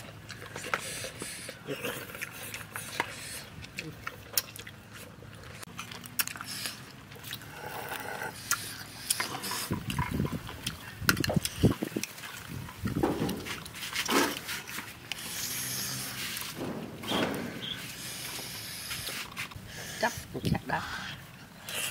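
Eating grilled snails: many small clicks and taps of snail shells and toothpicks against each other and the foil tray, with chewing in between.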